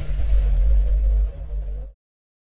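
Logo-reveal sound effect: a sustained deep bass rumble under a fading airy hiss, which drops in level about a second and a half in and then cuts off abruptly just before the end.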